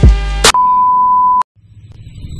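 A hip hop beat cuts off about half a second in. A steady, high electronic beep follows for about a second and stops abruptly. After a brief silence, a low rumble begins to swell.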